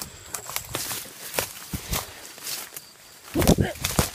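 Hurried running footsteps through dry leaves and grass: irregular crunches and knocks a few times a second, mixed with handling noise from a jolting handheld phone. A brief, loud voice sound comes about three and a half seconds in.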